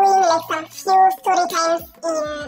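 A woman's voice talking close to a clip-on microphone, with some drawn-out vowels.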